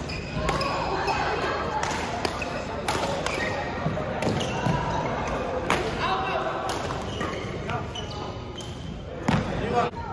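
Badminton doubles rally in a large gym hall: sharp racket-on-shuttlecock hits about every second, with a louder hit near the end. Short high sneaker squeaks on the court floor come between the hits.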